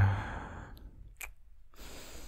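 A man's heavy breathy sigh close to the microphone, fading over under a second. About a second later comes a short click, like a kiss, and another breath near the end.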